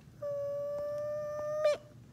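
A young girl humming one high note, held steady for about a second and a half and ending with a quick wobble in pitch.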